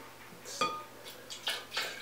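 A small cup knocking and clinking against the rim of a glass blender jar several times, one clink ringing briefly, as a cup of water is tipped in.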